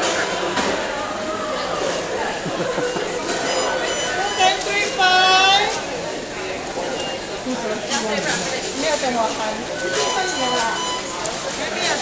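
Indistinct chatter of several people in a busy indoor public space, with one louder, higher-pitched voice standing out briefly about five seconds in.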